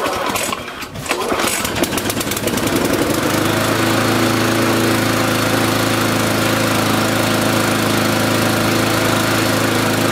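Mountfield SP470 lawnmower's petrol engine starting up: a second or two of uneven clatter as it catches, then from about three seconds in a steady, even run with no revving up and down, the sign of a correctly set carburettor.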